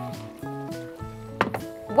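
Background music with held, gently shifting notes, and a single sharp knock about one and a half seconds in.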